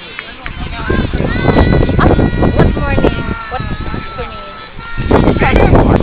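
Voices of children and adults calling out at a youth soccer game, with a steady high tone held for a few seconds in the middle and a steady low rumble underneath.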